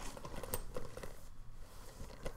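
Faint handling sounds of a leather handbag and its chain shoulder strap being put on: small scattered clicks and ticks with light rustling.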